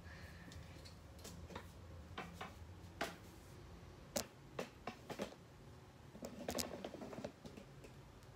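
Scattered clicks and knocks of a phone camera being handled and repositioned, with a denser patch of rubbing and knocking near the end, over a low steady hum.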